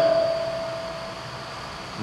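A short pause in a man's speech at a podium microphone. His voice dies away through the public-address system over the first second, and a thin single ringing tone lingers and fades out near the end, over a steady background hiss.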